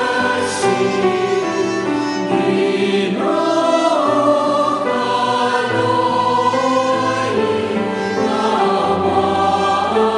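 Small group of male singers singing a slow liturgical chant in harmony, with long held notes that move slowly from one to the next.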